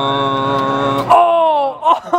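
A man's long drawn-out "uhhh" of suspense, held on one steady pitch, then sliding down in pitch about a second in.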